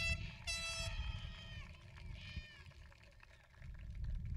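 Two short, high-pitched horn blasts from spectators, each dropping in pitch as it ends, then a fainter wavering call about two seconds in. A low rumble runs underneath.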